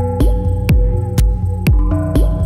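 Techno from a DJ mix: a steady four-on-the-floor kick drum at about two beats a second, each kick dropping in pitch, under sustained synth tones. A new chord of higher synth notes comes in near the end.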